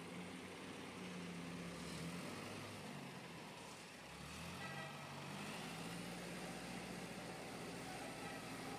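Diesel engine of an Escorts Hydra 12 pick-and-carry crane running while it hoists a jumbo bag, its engine speed shifting a couple of times.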